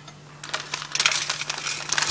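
Plastic tobacco pouch crinkling as a hand digs into it, a quick run of small crackles starting about half a second in.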